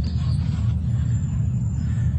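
A steady low rumble of wind buffeting a phone's microphone in an outdoor recording, starting abruptly.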